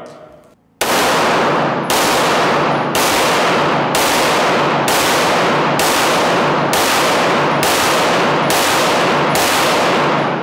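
Ten pistol shots, fired through a car windshield at about one per second, starting about a second in. Each report rings on until the next, so the sound hardly drops between shots.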